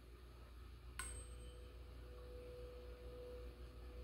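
A metal tuning fork struck once about a second in, with a short click, then ringing with one faint, steady pure tone that does not die away.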